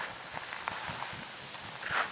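Quiet outdoor ambience: a steady soft hiss with a few faint ticks.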